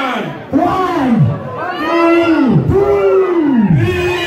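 Loud, drawn-out shouts from voices, one after another about once a second, each falling away in pitch at its end.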